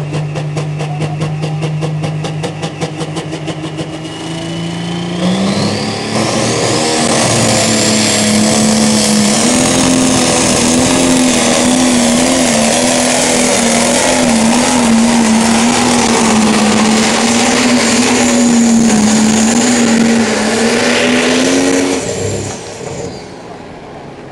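Pro Stock pulling tractor's turbocharged diesel engine running steadily at first, then about five seconds in it revs up to full power with a high whine rising over it. It holds hard under full load while dragging the pulling sled, then drops off near the end.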